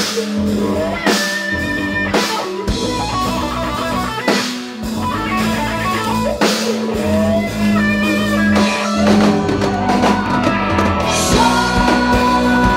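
Live rock band playing an instrumental passage: electric guitar lead lines over a held keyboard or bass note and a drum kit, with repeated cymbal crashes.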